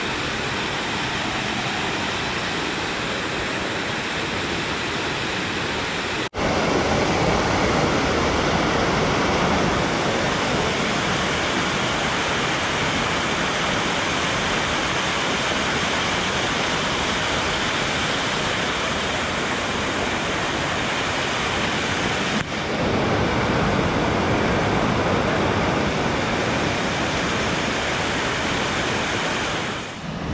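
Steady rush of a small waterfall cascading over boulders into a shallow pool. The sound breaks off abruptly twice, about six seconds in and again around two-thirds of the way through, and is louder after the first break.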